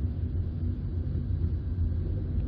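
Steady low rumble of road and engine noise inside the cabin of a 2017 Skoda Rapid Spaceback 1.2 TSI on the move.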